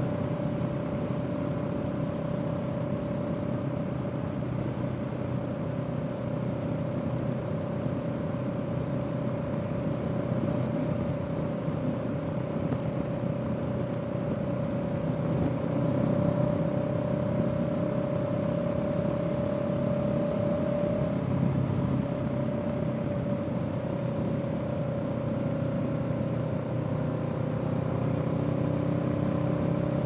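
Honda Rebel 500's parallel-twin engine running steadily at a cruise of around 40 mph, heard from the saddle with wind and road noise and a steady thin tone over the low hum.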